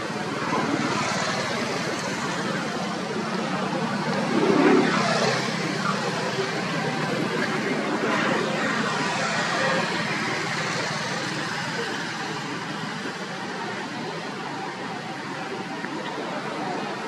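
Steady outdoor noise of road traffic, swelling louder for a moment about four to five seconds in.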